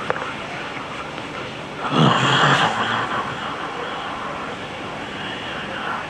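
Low murmur and rustle of a seated congregation as they lift their hands in prayer, with one loud breathy burst about two seconds in that lasts under a second.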